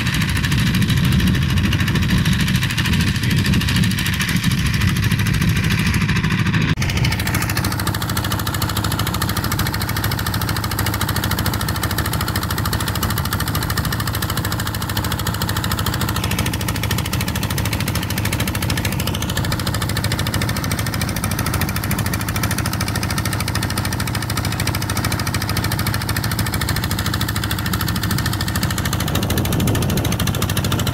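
A wooden fishing boat's inboard engine running steadily while under way, a low even thrum with no change in speed.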